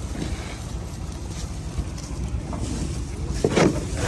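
Wind buffeting the microphone, a steady low rumble, with a short louder sound about three and a half seconds in.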